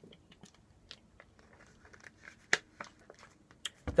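A person drinking from a plastic water bottle: faint swallows and small clicks and crinkles of the thin plastic, with one sharper click about two and a half seconds in.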